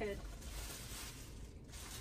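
Paper and packaging rustling, a soft hiss-like crinkle that fades about one and a half seconds in.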